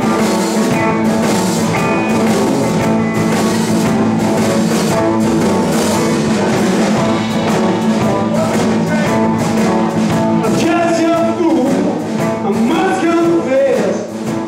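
Live blues band playing: electric guitars, bass guitar and drum kit, with the drums keeping a steady beat. In the last few seconds a lead line slides and bends in pitch over the band.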